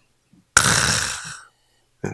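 A man's breathy vocal exhalation, like a sigh or a drawn-out "haa", close into a handheld microphone, starting suddenly and fading over about a second.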